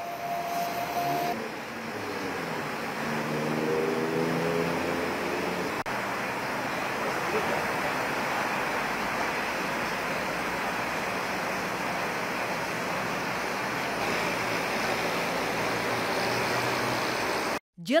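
Highway traffic: a steady rush of tyres and engines from cars passing at speed on a toll road, with one vehicle's engine note standing out briefly about three seconds in.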